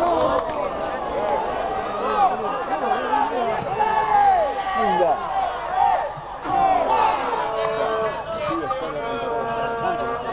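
Many voices of people at a football match shouting and calling over one another. Near the end a few long, held calls stand out.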